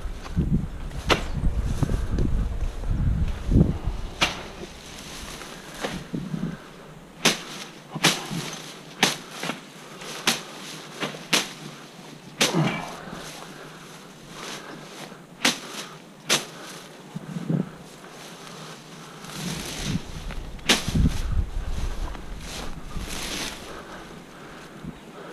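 Footsteps through grass and leafy vines on a slope, short crunching steps coming about once a second, with low buffeting on the camera's microphone near the start and again near the end.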